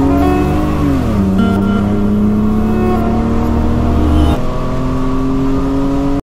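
Car engine pulling under acceleration. The revs rise, drop about a second in with a gear change, then climb slowly again. A deep low rumble underneath falls away a little past four seconds in.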